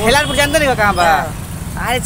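A person's voice speaking loudly, with a pause about halfway through, over a steady low rumble.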